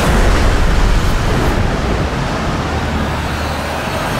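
Film sound effects of a violent storm at sea: a dense, loud wash of rain, wind and crashing waves over a heavy low rumble.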